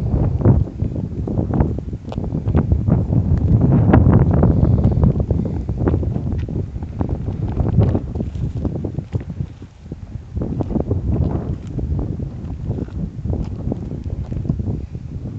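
Wind buffeting a handheld phone's microphone, an uneven low rumble that swells and eases in gusts and is loudest about four seconds in, with scattered crackles and rustles over it.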